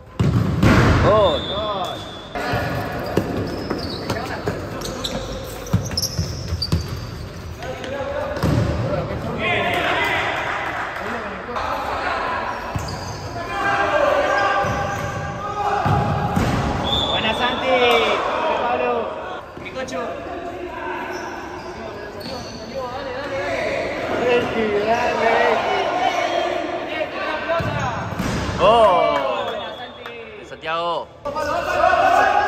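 A futsal ball being kicked and bouncing on a hard indoor court, with players' voices and shouts echoing in the hall.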